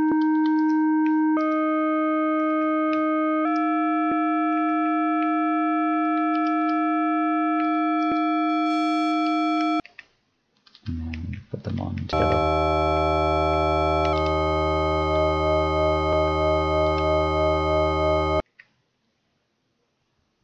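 Dirtywave M8 tracker FM synth playing a held note whose overtones change in two steps while an operator's ratio and level are adjusted, cutting off about halfway through. After a short pause, a deeper, richer FM tone with a bass part sounds, one overtone pulsing three or four times a second, and it stops shortly before the end.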